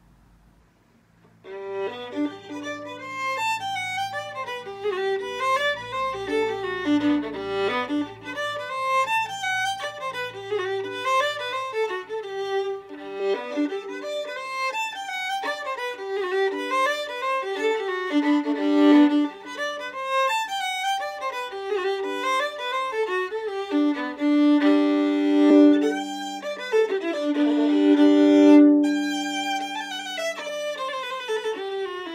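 A violin used as a fiddle, picked for its fiddling sound, is played solo. A quick tune of many short notes starts about a second and a half in, with longer held notes near the end.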